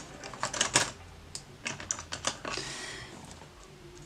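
Small hard plastic items, nail-art supplies, clicking and clacking as they are picked up and put down on a desk, in scattered quick clicks, with a brief rustle about two and a half seconds in.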